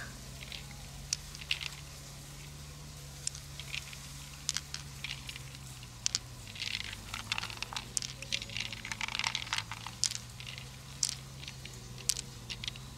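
Hands working in an opened freshwater mussel and handling pearls: scattered small clicks, taps and wet crackles, busiest in the second half, over a steady low hum.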